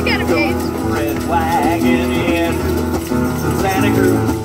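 Acoustic guitar played live in a children's sing-along, with children's voices and shakers joining in.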